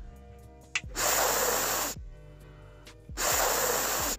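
A person sniffing twice, close to the microphone: two long, loud sniffs about two seconds apart, each lasting about a second, smelling the gelato. Faint background music runs underneath.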